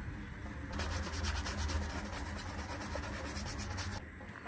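Quick, continuous rubbing strokes as foam shoe cleaner is scrubbed into a white sneaker, starting a little under a second in.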